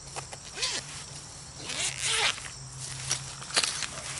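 A zipper being pulled open on the mesh pocket on the back of a fabric solar panel, in short strokes with the longest pull about two seconds in, followed by a couple of sharp clicks near the end.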